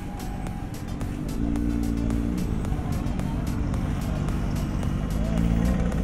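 Motorcycle engine running at low speed with a steady low rumble, heard from a helmet-mounted camera as the bike rolls in to be parked.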